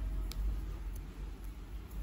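A pause in speech with only a steady low background rumble and two faint short ticks.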